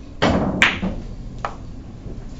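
Billiard balls on a carom table during the opening lag: a thud followed by a sharp, bright click in the first second, then a shorter click about a second and a half in.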